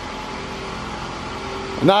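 2010 Toyota Camry Hybrid running while stationary, a steady low hum with a faint steady tone; a man's voice comes in near the end.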